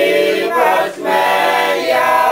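A small group of people singing together, with no instruments heard. They hold long notes and break briefly about a second in.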